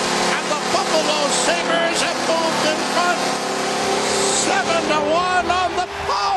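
Arena crowd cheering loudly and steadily, many voices and whistles at once, for a home-team goal that completes a hat trick.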